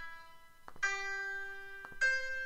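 Sampled piano notes played back by the notation editor as each note is entered: one note fades, then a single slightly higher note sounds about a second in and rings on. A faint click comes just before the new note.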